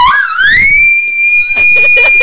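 A girl's high-pitched scream. It rises in pitch over the first half-second and is then held as one long, steady shriek.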